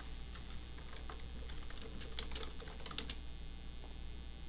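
Computer keyboard keystrokes: irregular clicks that come thickest from about one and a half to three seconds in, as text is deleted in a word processor. A steady low electrical hum lies underneath.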